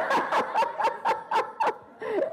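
A woman laughing into a handheld microphone: a quick run of short laughs, about four a second, that dies away near the end.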